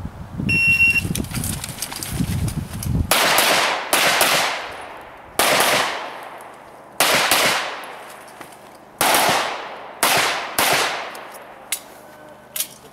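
A shot timer's start beep, then a pistol fired in quick pairs of shots with pauses of a second or more between the pairs, each shot ringing out across the range.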